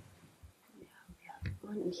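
Faint, distant speech, soft and broken, growing clearer near the end, with a short low knock at the start.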